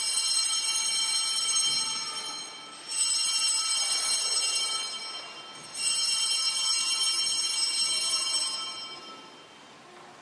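Altar bells rung three times, marking the elevation of the chalice at the consecration of the Mass: at the start, about three seconds in, and about six seconds in. Each ring is a shimmering cluster of high bell tones that hangs for a few seconds and fades away, and the last dies out near the end.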